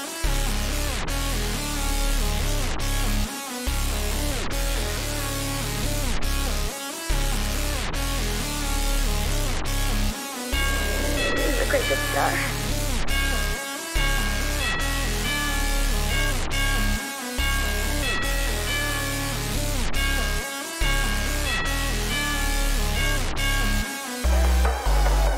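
Rage-style trap beat: a looping bright synth melody over a heavy 808 bass, with the bass cutting out briefly about every three and a half seconds.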